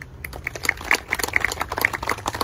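A small audience clapping: many irregular, sharp individual claps, some close and loud.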